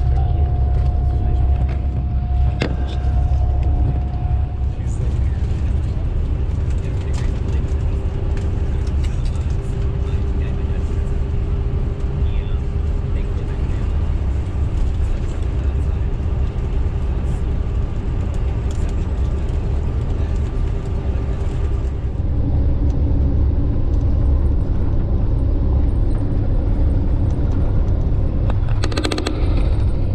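Steady low rumble of a coach bus's engine and tyres heard from inside the cabin while driving on the highway, with a faint steady whine that shifts pitch a couple of times.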